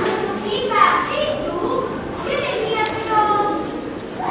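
Children's high-pitched voices speaking.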